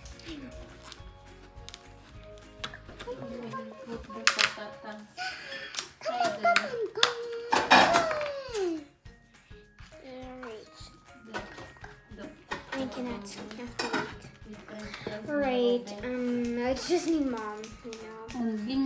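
Young children's voices over background music, with a few sharp clicks from a plastic doll package and its accessories being handled.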